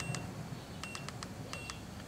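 TOPDON ArtiLink 201 OBD-II code reader giving a short high beep, with a click, at each press of its down button as it scrolls through the diagnostic menu: three beeps under a second apart.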